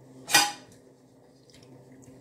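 Dishes clinking once, a sharp clatter with a brief ring about a third of a second in, over a low steady hum.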